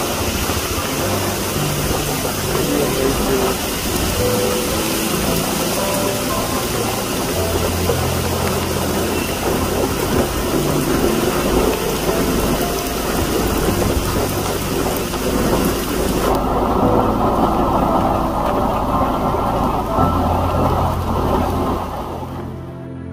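Heavy rain falling, a dense steady hiss, with low held tones underneath that shift every few seconds. About sixteen seconds in, the bright top of the hiss drops away and the rain sounds duller.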